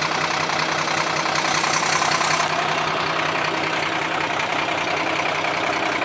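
Diesel engine of a Volvo fire tanker truck idling steadily close by.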